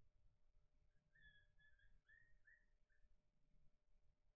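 Near silence: faint room tone, with a quick run of about six faint, short, high whistle-like chirps between about one and three seconds in.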